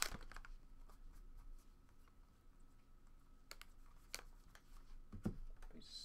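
Quiet hand-handling noise at a table: a few faint, scattered clicks and taps, a soft thump about five seconds in, and a brief hiss at the very end.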